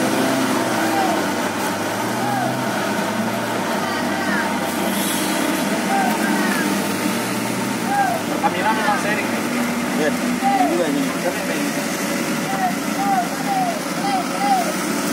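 Cars and trucks climbing a wet, rain-soaked hairpin: steady engine noise with the hiss of rain and tyres on the wet road. Over it come short, repeated calls, mostly in quick runs of two or three, more often in the second half.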